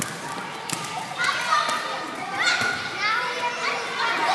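Several children calling out and chattering with high voices in a large gym hall, with a few sharp knocks of hands and feet on the floor early on.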